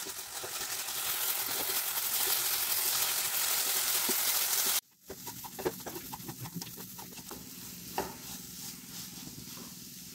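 Grated carrot sizzling in a nonstick frying pan while being stirred with a wooden spatula. The sizzle is loud for the first half, stops abruptly, then returns quieter, with scattered scrapes and taps of the spatula against the pan.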